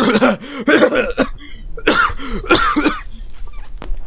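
A man coughing in a fit of about four coughs, the last ones coming about half a second apart.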